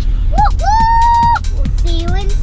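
A young girl singing: a swoop up into one long held high note, then lower notes, over the steady low rumble of a moving car's cabin.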